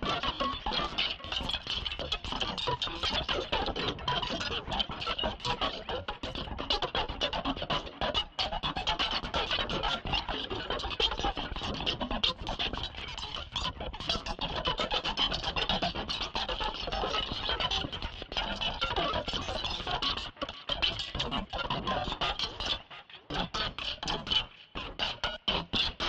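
Electronic music from a heavily modulated Mimic sampler in Reason+: a sliced sample played back in rapid, choppy fragments through a ring-mod effect. There are a couple of brief dropouts near the end.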